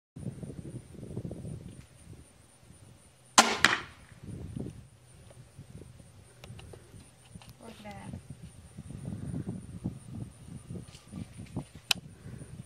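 Barnett Jackal 150-pound-draw crossbow firing once about three seconds in: a sharp crack of the released string with a quick second snap after it. A low rumble runs underneath, and a single sharp click comes just before the end.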